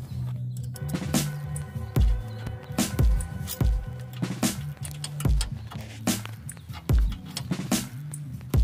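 Background electronic music with a deep bass line and a heavy, unevenly spaced kick drum.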